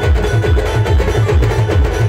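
Live band playing a Rodali dance tune: fast, steady drum beats about four a second under held melody notes.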